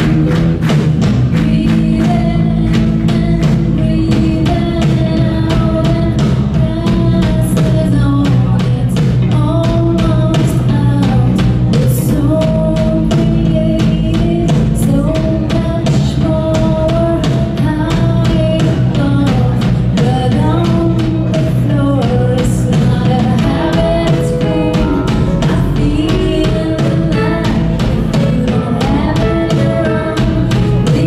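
Live rock band playing loud through a PA: a woman singing lead into a handheld microphone over electric guitars, bass guitar and a drum kit keeping a steady beat.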